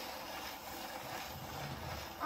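Surface noise of a 78 rpm shellac record played on an acoustic gramophone: the steel needle running in the lead-in groove, heard through the soundbox as a steady hiss.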